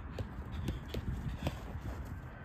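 A football being tapped quickly between a player's boots on artificial turf, with light footsteps. The touches come as a run of short taps, about three or four a second.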